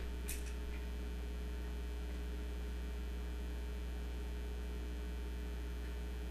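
Steady electrical mains hum, with one brief faint scratch about a third of a second in.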